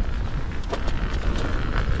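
Wind buffeting the microphone of a camera carried at riding speed: a steady low rumble with a few light clicks.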